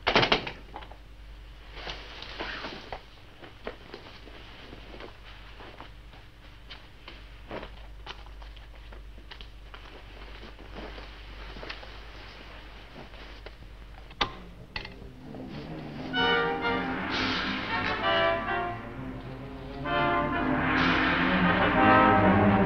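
Film soundtrack: a loud knock at the start, then scattered faint clicks and knocks over a low hum. About three-quarters of the way through, an orchestral score with brass comes in and grows louder.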